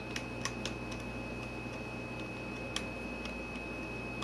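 A few light, spaced-out clicks of keys on a backlit computer keyboard being pressed, the clearest near three seconds in, over a steady faint high whine and low hum.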